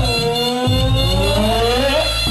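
Live band music: a long melody note slides down and then back up in pitch over held chords and a steady bass.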